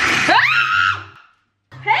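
A young woman's startled shriek, sliding up in pitch and held for about a second, then cut off suddenly, as an electric hand blender running at high speed sprays pancake batter.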